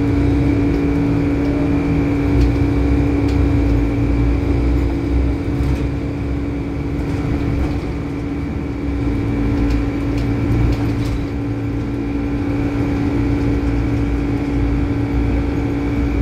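Inside a Volvo B12BLE bus under way: the noisy air conditioning runs as a steady hum, over the low rumble of the engine and tyres.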